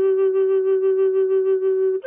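Native American flute holding one long, steady note, its tone wavering slightly in a regular pulse, breaking off at the end.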